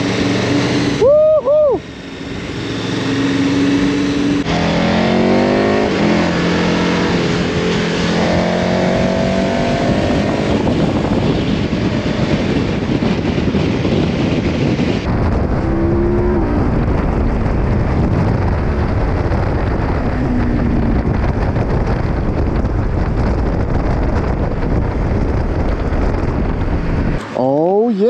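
KTM Super Adventure V-twin motorcycle engine accelerating, its pitch rising through several gear changes in the first ten seconds. From about halfway, heavy wind rushing over the camera at speed covers most of the engine sound.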